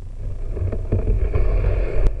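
Loaded inflatable boat being dragged over snow and ice: a rising scraping rumble through the hull-mounted camera, with several crunches around the first second.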